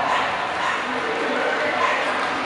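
A dog barking over the steady chatter of a crowd.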